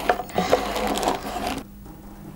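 Plastic packing tape crinkling and rubbing under the fingertips as it is pressed down to seal the sound holes of a wooden instrument top. It stops abruptly about one and a half seconds in, leaving only a faint steady hum.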